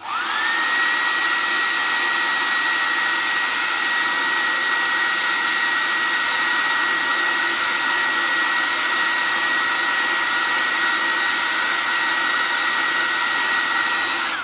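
Handheld hair dryer switched on and running steadily, a blowing rush with a high motor whine that rises as it spins up in the first half-second, then holds at one pitch.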